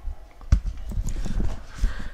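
Handling noise from a camera being grabbed and moved: irregular low thumps and knocks on the microphone, with one sharp click about half a second in.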